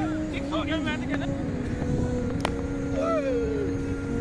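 A cricket bat striking a taped tennis ball once with a sharp crack about two and a half seconds in, amid players' shouts and calls over a steady low rumble.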